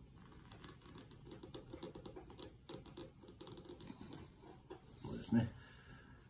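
A calligrapher's seal being inked in red seal paste and pressed onto a shikishi board: a run of faint small taps and scratches.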